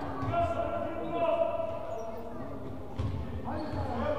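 Basketball bouncing on a hardwood gym floor with a few low thuds during play, under shouting voices that echo in a large sports hall.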